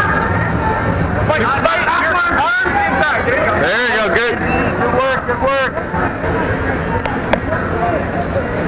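Crowd of spectators talking and calling out, many voices overlapping, over a steady low hum, with two sharp clicks near the end.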